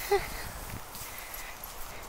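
A single brief voiced 'ha', short and slightly falling in pitch, then quiet footsteps on a gravel track.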